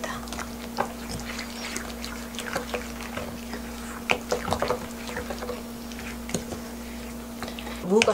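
Wooden spoon stirring a thick, wet chili-pepper seasoning paste in a stainless steel pan: soft wet squelching with scattered light scrapes and taps against the pan. A faint steady hum runs underneath.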